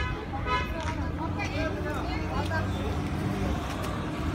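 A minivan's engine running close by, a low steady hum, amid street-market voices.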